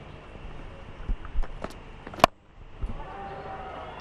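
A cricket bat striking the ball: one sharp crack a little past halfway, the loudest sound, after a few fainter clicks over a steady low ground ambience. The shot sends the ball high in the air, a skied shot the batter was not in control of.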